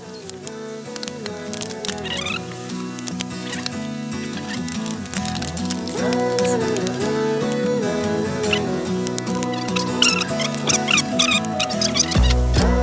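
Background music with melodic lines over a steady low part, fading in over the first several seconds.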